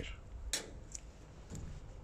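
A glass microscope slide being set down, with a single light click about half a second in and a fainter tick just after.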